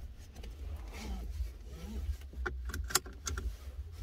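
A seatbelt being handled in a car cabin: a few small clicks and rattles come about two and a half to three and a half seconds in, over a low steady rumble.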